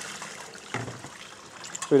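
Water poured from a plastic bucket into the top of a water pump to prime it: a steady trickling splash.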